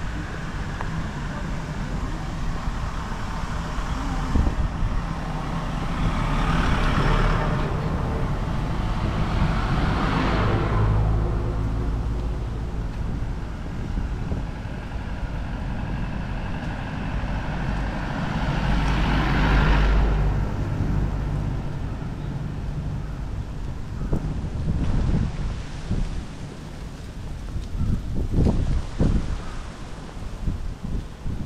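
Road traffic passing close by, several vehicles going by one after another with a low rumble and tyre noise that swells and fades, the loudest pass about two-thirds of the way through as a small truck goes by. A few sharp knocks near the end.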